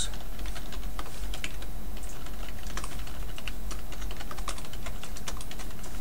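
Typing on a computer keyboard: a run of quick, irregular key clicks, over a steady low hum.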